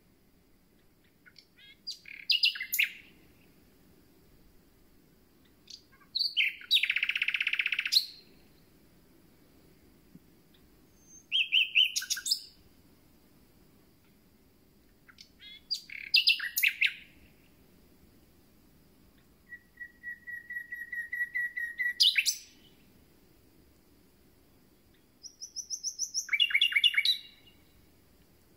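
Common nightingale singing: six separate song phrases a few seconds apart, each a quick burst of varied whistles, clicks and trills. One phrase is a harsh rasping buzz. Another is a run of repeated notes that swells in loudness and ends in a sharp high note.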